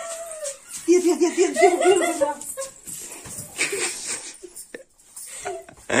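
Girls laughing and squealing while play-wrestling, with a run of short, quick laughing bursts about a second in, then fainter breathy sounds.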